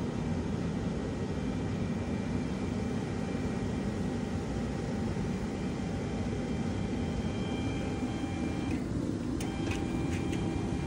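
Electric winch motor of a hitch-mounted carrier running steadily with a whine as the carrier pivots down. It stops briefly about nine seconds in, then starts again with a few clicks.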